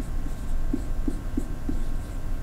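Dry-erase marker writing on a whiteboard, with about four short squeaky strokes in the second half over a low steady room hum.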